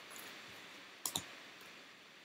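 Tarot cards handled and laid down on a tabletop: a few light clicks, two sharper ones close together a little past a second in.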